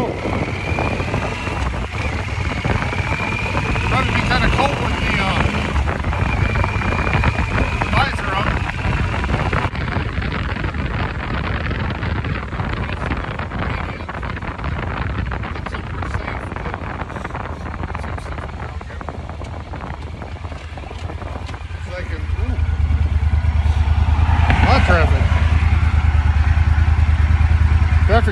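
Yamaha Super Ténéré parallel-twin motorcycle engine running as the bike is ridden, its note climbing a few times in the first several seconds as it pulls away. About two-thirds of the way through it gets louder, a heavier low rumble mixed with wind noise on the handlebar-mounted phone's microphone.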